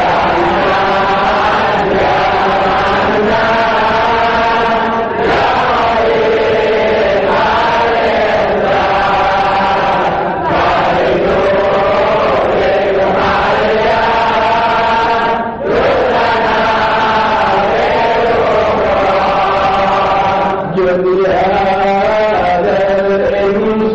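Voices chanting Islamic devotional verses in long, sustained phrases of about five seconds each, with brief breaks for breath between them.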